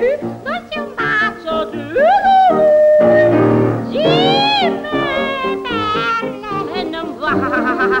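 A soprano voice singing with wide swooping glides up and down and one long held note, over piano accompaniment. A short laugh comes at the very end.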